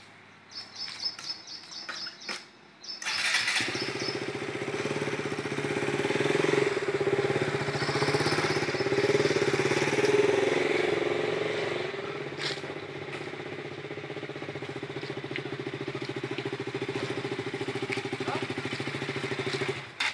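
A vehicle engine starts about three and a half seconds in and runs steadily with a fast even pulse. It grows louder for a few seconds in the middle, settles, and stops abruptly at the end. Before it starts there are a few light clicks and a faint high ticking.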